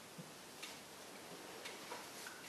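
Quiet room tone with a few faint, scattered ticks.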